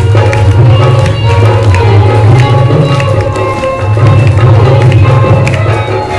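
Live devotional group music for a birth celebration: women singing with a hand drum keeping a steady beat and clapping, loud and crowded.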